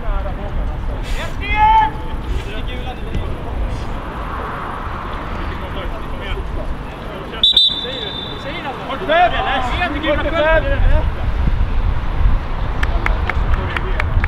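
Players' voices and shouts carrying across an open football pitch over a steady low rumble, with one short blast of a referee's whistle about halfway through.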